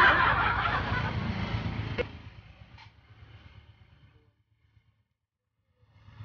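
A motor vehicle passing by, its noise fading away over the first two seconds. A sharp click follows, then a fainter one, and then near silence.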